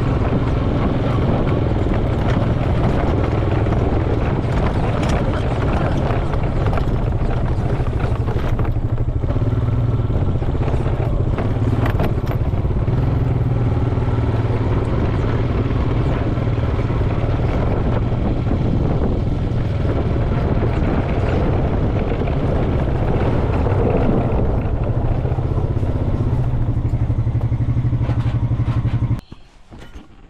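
ATV engine running steadily while driving over grass, with a strong low hum; it cuts off sharply about a second before the end.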